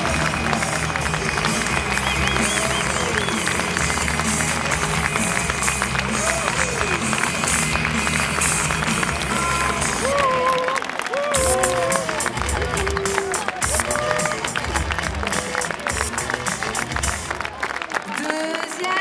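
Football stadium crowd cheering and clapping a goal, with goal music carrying a steady beat over the stadium loudspeakers and voices calling and chanting loudly over it, strongest in the second half.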